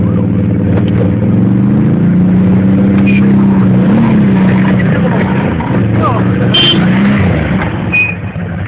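Quad bike (ATV) engine held at high revs under load as its tyres spin in deep mud, the pitch dipping and recovering briefly about four and seven seconds in. The spinning wheels are throwing mud and spray while the quad is hauled up out of a pond on a tow line.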